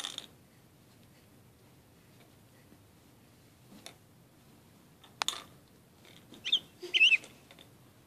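A baby's short, high-pitched squeals, a few of them about six and seven seconds in, after a sharp click about five seconds in.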